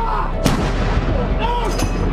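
A single sharp bang like a gunshot about half a second in, with short calls from a voice around it.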